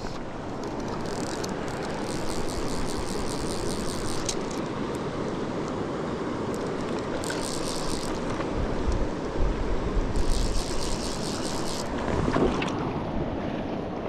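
Fast-flowing mountain river rushing steadily. A fly reel's click drag ratchets in three bursts of a second or more while a hooked trout is played in.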